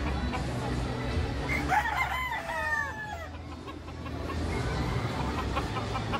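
A gamecock crows once, starting about a second and a half in. The call runs short rising notes into a long falling note, heard over a steady low hum.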